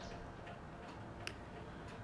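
Faint background room noise with a single soft click about a second in.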